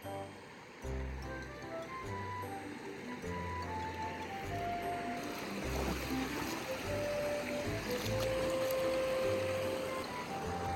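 Background music, a simple melody over a steady bass line, with the rushing noise of river water growing louder about halfway through.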